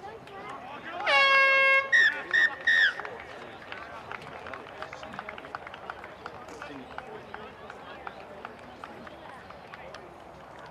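A horn gives one long steady blast about a second in, then three short blasts in quick succession, like the full-time hooter at a football ground. Faint voices and field noise follow.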